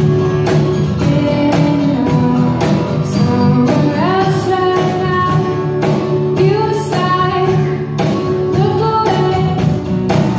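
A woman singing live to her own steadily strummed guitar, her voice rising clearly into the melody about four seconds in.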